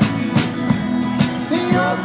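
A small rock band playing a song live: electric and acoustic guitars strumming chords over a steady drum beat from a small kit, the hits coming about three times a second.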